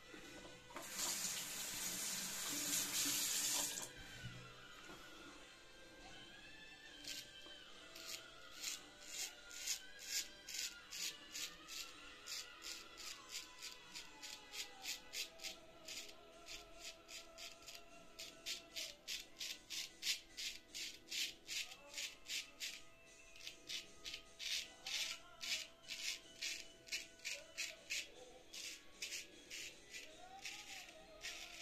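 Straight razor cutting through lathered stubble in short strokes: a quick series of crisp scrapes, about two to three a second, over soft background music. Near the start, water from a tap runs for about three seconds.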